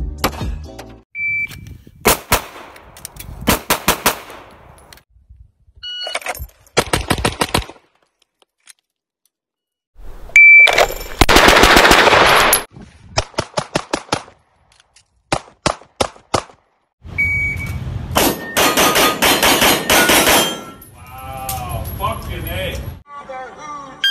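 Pistol shots fired in quick strings of several rounds each, one string after another with short pauses between. Some strings are led by a short high electronic beep from a shot timer.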